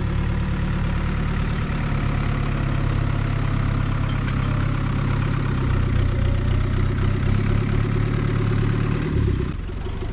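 Farm tractor with a front loader and rear-mounted boom sprayer running steadily as it drives off across a grass field. Its engine note drops away about nine and a half seconds in.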